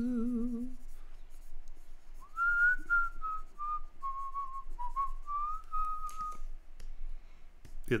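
A man hums a short note with a wavering pitch, then whistles a short tune for about four seconds, the notes stepping down and then back up.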